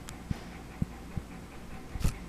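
Soft handling noises as a printed sheet of paper is shifted under the camera: a few short, dull thumps about half a second apart, a light click at the start and a sharper click at the end.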